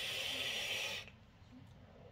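Steady airy hiss of air being drawn through a Hellvape Fat Rabbit RTA's airflow as a long drag is taken, cutting off suddenly about a second in.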